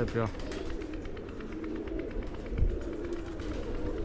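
A flock of domestic pigeons cooing, a steady low overlapping cooing throughout, with one short low thump about two and a half seconds in.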